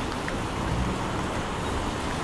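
Steady street noise: cars passing on a wet road, their tyres hissing, with a low traffic rumble.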